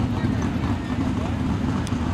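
Sprint car's V8 engine idling with a steady, lumpy low rumble, and faint voices in the background.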